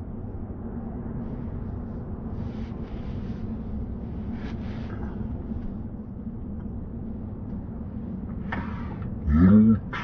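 Steady road and tyre rumble inside a Tesla's cabin as it drives at speed, with a faint low hum, and a voice-like sound near the end.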